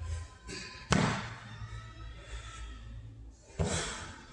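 Dumbbells set back down on the gym floor during plank rows: two sharp thuds, about a second in and again near the end, over background music.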